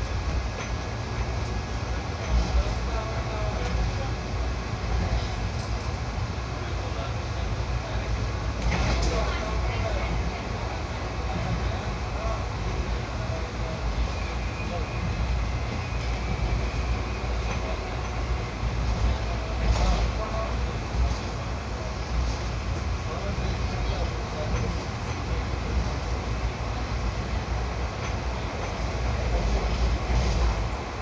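Passenger train running through a station without stopping, heard from inside the coach: a steady rumble of wheels on rail, with sharper clatters about nine and twenty seconds in.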